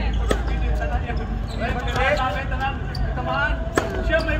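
Tennis ball being struck, two sharp knocks about three and a half seconds apart, with voices talking in the background.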